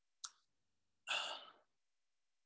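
A man's short sigh, a breathy exhale about a second in, preceded by a brief click like a lip smack.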